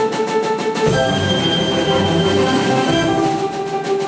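Live violin-led ensemble of violin, piano, cello, double bass and drum kit playing, the violin holding long notes. Rapid cymbal strokes ring in the first second and again near the end.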